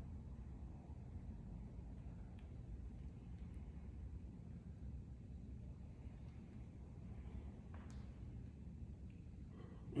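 Quiet room tone: a faint, steady low rumble with a few faint, light clicks. A man starts laughing at the very end.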